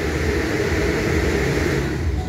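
Foam party cannon's blower fan running, a steady rush of air as it throws out foam; the higher hiss thins out right at the end.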